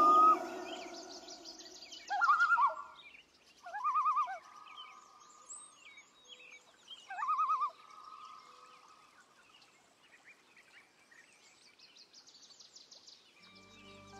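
Forest bird calls: three loud, warbling calls a couple of seconds apart, each trailing off into a held note, over faint high chirping.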